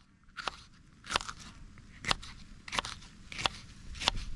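Kitchen knife slicing through a green bell pepper on a wooden cutting board: about five crisp, crunching cuts, each ending in a knock of the blade on the board, spaced under a second apart.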